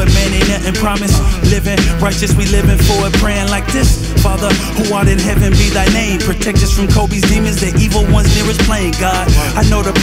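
Hip hop track with a heavy bass beat and rapped vocals over it.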